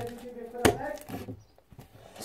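Fluffy slime being pressed and kneaded by hand on a tabletop, with one sharp pop or click about two-thirds of a second in and softer handling sounds after it.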